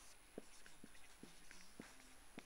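Marker pen writing on a whiteboard: a faint string of short, irregularly spaced strokes as an equation is written out.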